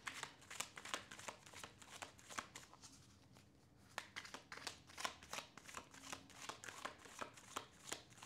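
A tarot deck being shuffled by hand: faint, irregular card flicks and taps, with a short lull about three seconds in.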